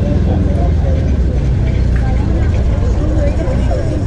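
Indistinct voices over a steady, loud low rumble.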